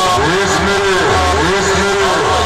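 A rack of horn loudspeakers blasting a DJ dialogue-mix track loudly, here a swooping effect that rises and falls in pitch over and over.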